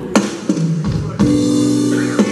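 Instrumental backing track starting through the PA: a few drum hits, then a held chord from a little past a second in.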